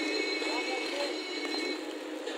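Steady sizzle of kikiam deep-frying in a wok of hot oil, with faint voices in the background.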